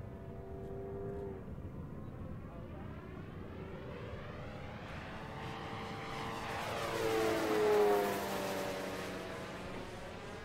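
Electric-powered Legend Hobby 86-inch A-1 Skyraider RC warbird passing low and fast: its propeller and motor sound swells to a peak nearly eight seconds in and drops in pitch as it goes by.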